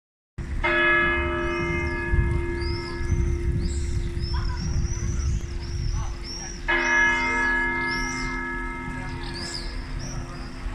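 A church bell in a stone bell tower tolling twice, about six seconds apart, each stroke ringing on and slowly fading. Small birds chirp high and steadily throughout.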